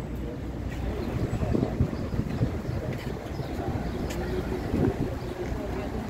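Wind rumbling on the microphone, with faint voices of people talking in the background.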